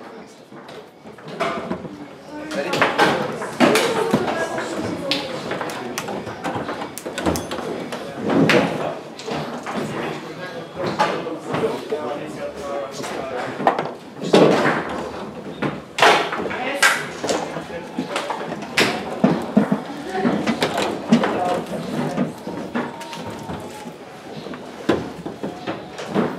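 Foosball played on a Rosengart table: the hard ball struck by the rod figures and banging off the table walls, with rods knocking against the frame, giving a string of sharp irregular knocks, loudest a few seconds in and again around the middle.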